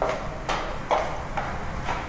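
A series of short knocks, about two a second, in an even rhythm.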